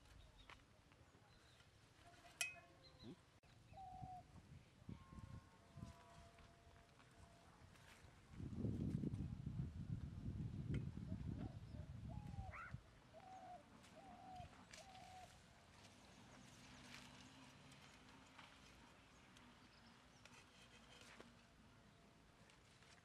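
Faint rural outdoor ambience with a few short calls from animals, several in quick succession about two-thirds of the way through. In the middle, a few seconds of low rumbling noise.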